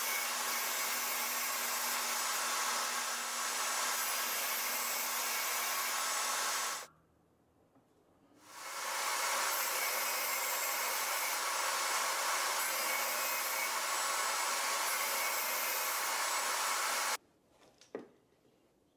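Table saw running with its blade spinning while a small wooden block is pushed through to cut a slot: two long stretches of steady motor noise, broken by a quiet gap of about a second and a half around the middle.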